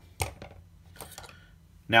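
A folding knife handled and set down on a cutting mat: a light knock shortly after the start, then a few faint clicks about a second in.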